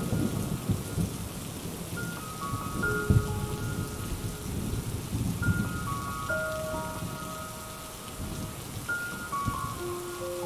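Steady rain with rolling thunder rumbling near the start and again about three seconds in, laid under a soft, slow melody of held high bell-like notes that comes in short phrases every few seconds.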